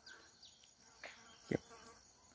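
Faint background insect sound, with a single short spoken word about one and a half seconds in.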